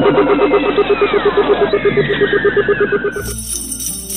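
Spooky sound-effect or music sting with a fast, even pulsing beat under long falling wails. It cuts off about three seconds in and gives way to a jingle of bells.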